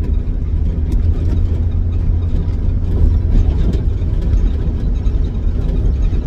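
Steady low drone of a utility van's engine and road noise heard from inside the cabin while driving, with the dash A/C vents blowing. The engine seems to be running fine after a hard start.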